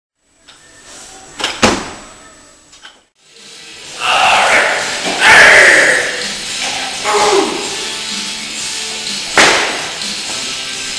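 Two sharp slams about a second and a half in, then loud music with another sharp impact near the end.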